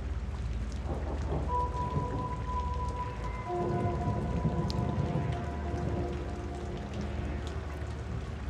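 Dark ambient backing track over a rain-like rumble and hiss. Held tones come in about a second and a half in, and a lower pair of tones joins about two seconds later.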